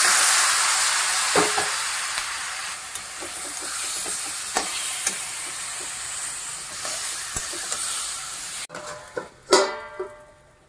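Raw pork pieces sizzling loudly in hot oil in a steel kadai. The sizzle starts suddenly, slowly dies down, and is broken by a few scrapes of a metal spatula. Near the end the sizzle cuts off suddenly, and a steel lid clatters onto the pan with a brief ringing.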